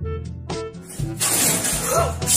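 A loud shattering crash, as of things breaking, begins about a second in and carries on, over light background music.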